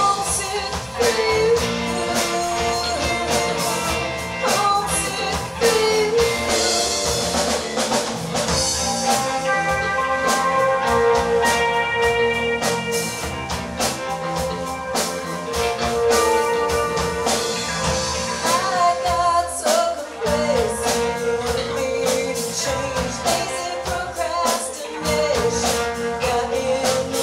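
A live rock band playing, with electric guitars and a drum kit, and a woman singing lead.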